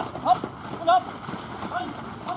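Hoofbeats of a pair of carriage horses moving through wet mud, with a few short, high voice calls over them.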